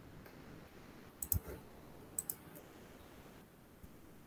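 Computer mouse clicking: two quick double clicks about a second apart, faint against a quiet room.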